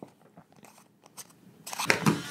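Faint, scattered clicks and light scraping from hands handling the small metal parts of a miniature potato cannon, with a louder burst of crackling clicks near the end.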